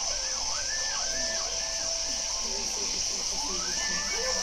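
Electronic soundscape made with a phone or tablet app: several tones sliding up and down in pitch, some held briefly, over a steady high hiss.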